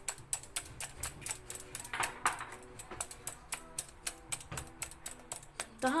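Spiral wire whisk beating a raw egg in a glass bowl: quick, uneven clicking and tapping of the wire coil against the glass.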